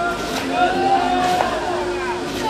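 Baseball players shouting long, drawn-out calls during infield fielding practice, several voices overlapping. Two sharp clicks about a second apart mark balls being hit and caught.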